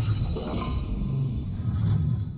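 Logo intro music: a deep low bed with a bright, high ringing chime at the start that dies away within about a second, swelling again near the end.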